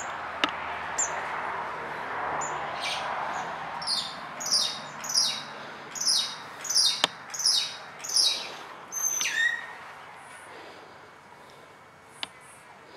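A songbird calling a run of about nine high, quick notes, each falling in pitch, about two a second, starting a third of the way in and stopping before the end. Beneath it is a steady background hiss that fades near the end, with two sharp clicks, one just after the start and one about seven seconds in.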